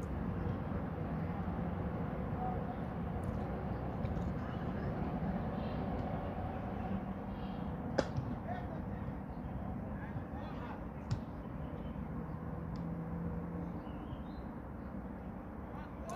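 Cricket bat striking the ball once, a single sharp crack about halfway through, over open-air ground ambience with faint distant voices.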